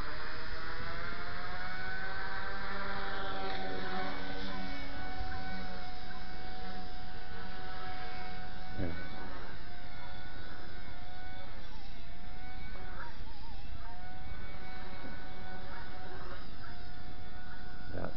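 XK K120 micro RC helicopter's motor and rotor whine spooling up as the throttle is raised. The pitch climbs over the first few seconds, then holds steady with small wavers, still short of lift-off.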